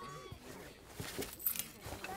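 Indistinct background chatter of children and adults in a hall, with a few light knocks.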